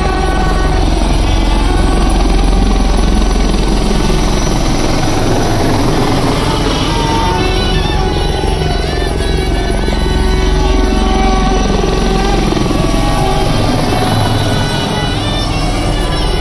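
A helicopter flying low overhead, its rotor beating steadily and loudest in the first few seconds, with music playing alongside.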